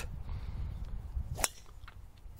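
A driver striking a teed golf ball: one sharp click about one and a half seconds in.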